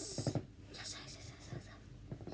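A boy's voice, muttering and whispering quietly, with a short voiced sound at the start.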